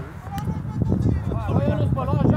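Indistinct voices of spectators talking and calling out, over a low rumble of wind on the microphone.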